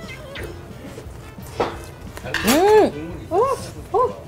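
Faint clinking of chopsticks and dishes at a dining table. From a little past halfway, a drawn-out, wow-like voice rises and falls in pitch three times.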